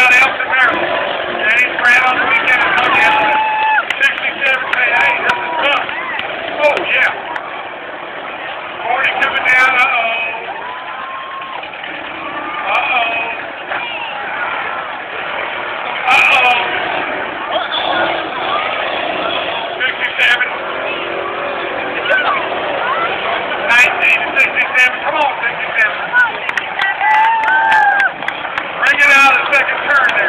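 Demolition derby cars running and colliding in a dirt arena, heard under the chatter of a big crowd close by, with sharp knocks every few seconds.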